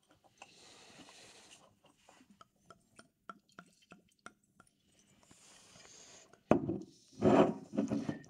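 Red wine poured from a bottle into stemmed tasting glasses: two soft pours with a run of small clicks between them. A sharp knock comes near the end.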